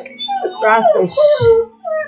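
A dog howling and whimpering in long sliding notes that fall and rise in pitch, with a short hiss about a second in.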